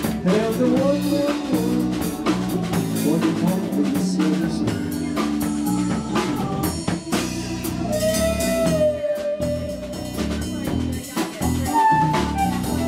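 Live blues band playing: electric guitar, Hammond SK1 stage organ, electric bass and drum kit. About two-thirds in, long held lead notes come in over the rhythm.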